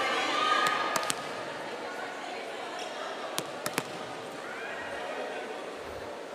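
Indoor sports-arena ambience of background voices and crowd chatter, with a volleyball bouncing sharply on the court floor a few times: twice about a second in and three times a little past the middle.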